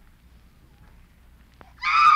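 Quiet broadcast room tone with a faint click, then near the end a woman's high-pitched scream: a radio actress crying out in alarm on finding a man collapsed.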